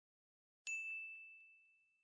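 A single high, clear ding, like a small bell or chime struck once, about two-thirds of a second in, ringing out and fading away over the next second and a half.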